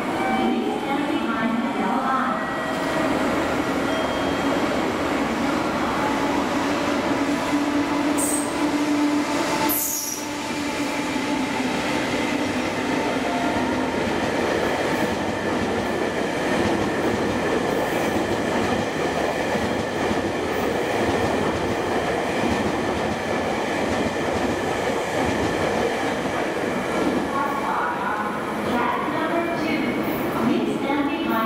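An electric locomotive hauls an unpowered Tobu 500 series Revaty trainset through a station: a steady run of wheels on rail, with two brief high wheel squeals about eight and ten seconds in.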